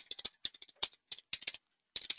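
Typing on a computer keyboard: quick, irregular key clicks, with a brief pause near the end.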